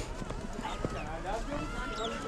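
Voices of people talking at a distance, with scattered footsteps on a slushy snow path.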